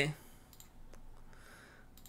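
A near-quiet pause with a few faint clicks and a soft short hiss about halfway through.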